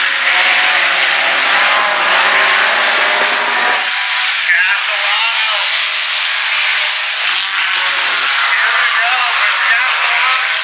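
Several four-cylinder sport compact race cars running laps together on a dirt oval, their engines making a continuous loud drone. In the first few seconds a nearer car's engine tone stands out, then drops away sharply about four seconds in.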